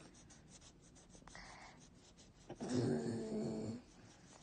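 Felt-tip marker scribbling on a paper worksheet in short scratchy strokes. About two and a half seconds in comes a louder, steady, pitched vocal sound lasting about a second, like a hum or groan, that the material does not tie to a source.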